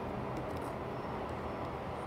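Steady low background rumble and hiss, with a few faint light ticks of a plastic hook against the plastic pegs and rubber bands of a Rainbow Loom.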